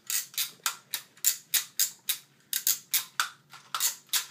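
Toy grabber's claw being snapped open and shut over and over, a steady run of sharp clicks at about four a second. It sounds broken but is just how this grabber sounds.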